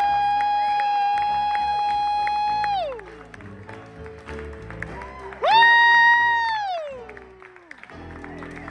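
A woman's singing voice holding one long, steady high note that ends about three seconds in, over piano and upright bass, with scattered clapping. About five and a half seconds in, a second high vocal note, the loudest sound here, rises in, holds, then slides down and fades.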